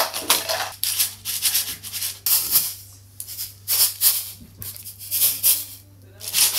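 Homemade shakers, paper cups filled with rice and sealed with aluminium foil and baking paper under rubber bands, shaken in rhythmic bursts that rattle like maracas. The shaking pauses briefly around the middle.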